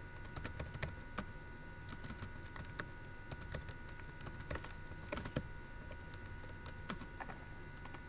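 Computer keyboard typing: faint, irregular keystrokes, a few to several a second, with short pauses between bursts.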